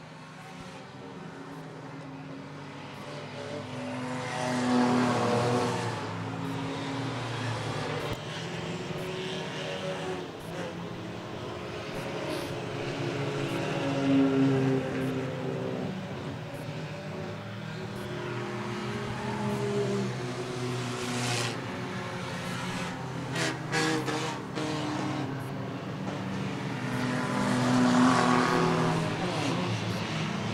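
A pack of enduro stock cars running laps on a short oval, many engines droning together. The sound swells and fades as the cars pass, loudest about five, fourteen and twenty-eight seconds in.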